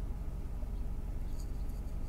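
Low, steady rumble of the Mercedes 500SL's V8 idling, heard from inside the cabin.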